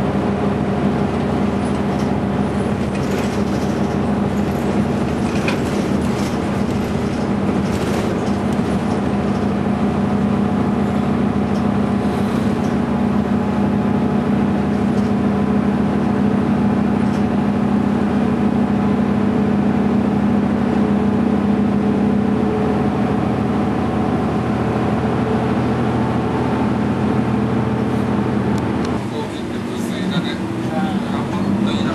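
Cabin sound of a moving route bus: the engine running steadily under a wash of road noise. The engine note eases and drops near the end as the bus slows.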